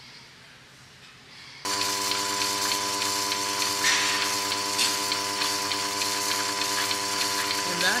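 Goat milking machine running: a steady hum from its vacuum pump as the teat cups draw milk. The hum comes in suddenly about two seconds in, after a quiet stretch.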